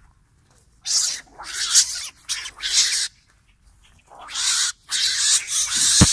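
Snared mongooses giving harsh, hissing screeches in a run of bursts from about a second in, pausing briefly, then starting again about four seconds in.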